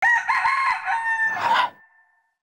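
A rooster's crow: one call about a second and a half long that starts suddenly and trails off near the end.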